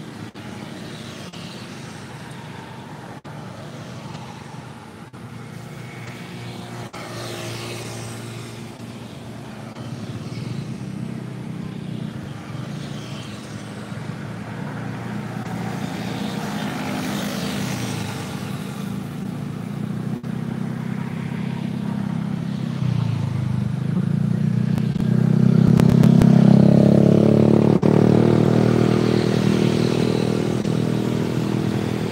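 A vehicle engine running, growing gradually louder and loudest about 26 seconds in, then easing slightly.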